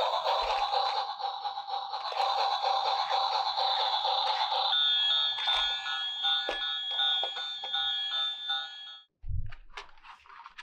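Battery-operated toy train playing an electronic tune, which changes to a beeping jingle about halfway through and cuts off suddenly near the end, followed by a low thump.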